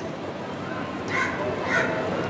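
Steady outdoor background noise with two brief, faint animal calls, about a second in and again near the end.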